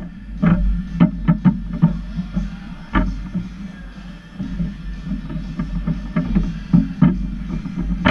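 Table football in play on a Lettner table: irregular sharp clacks of the ball being struck by the plastic figures and knocking against the table, with rods banging, over music playing in the background.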